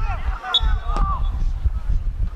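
A football kicked once about a second in, amid players' shouts on the pitch and a brief high whistle tone just before it, over a low wind rumble on the microphone.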